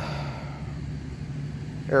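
Steady low mechanical hum, like a motor running at rest.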